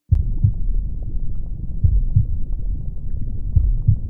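A deep, uneven rumbling with irregular heavier pulses and scattered faint crackles, starting abruptly.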